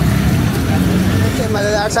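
Chapli kababs and chicken frying in hot oil in a large karahi, sizzling over a steady low rumble; a man starts talking about one and a half seconds in.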